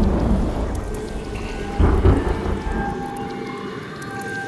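Thunder rumbling with rain, swelling again about two seconds in and then fading away, with faint held music tones above it.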